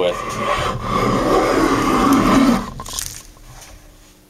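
Small hand plane taking one long shaving stroke along the edge of a pressure-treated wooden shaft, chamfering it. The scraping lasts about two and a half seconds and fades out near the three-second mark.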